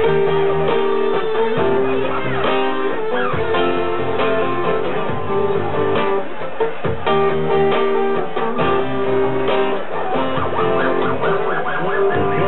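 Live acoustic guitar strumming chords over held keyboard notes, an instrumental passage with the chords changing every second or two; a male voice begins singing near the end.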